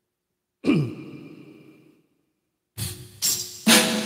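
A single hit with a pitch that drops quickly, ringing out for about a second, then a short silence. Near the end, music starts: an acoustic guitar strums three chords.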